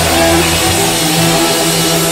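Live southern rock band playing: distorted electric guitars holding sustained, bending notes over bass and drums.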